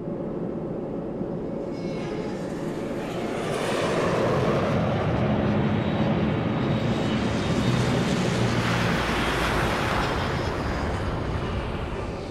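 Engines of a large four-engine transport aircraft running steadily, growing louder about four seconds in.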